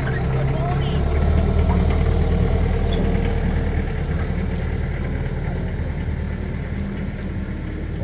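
Tractor engine running steadily as it tows a train of open passenger wagons past, getting gradually quieter over the second half as it pulls away.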